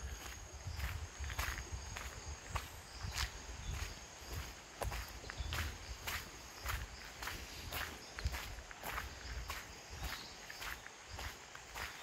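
Footsteps on a wet gravel road, about two steps a second, with a low rumble underneath.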